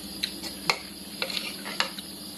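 Metal spoon clinking and scraping against a ceramic plate during a meal, with several sharp, light clinks spread across the two seconds.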